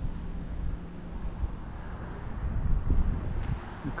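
Wind rumbling on the microphone, with a car approaching along the street, its road noise growing toward the end.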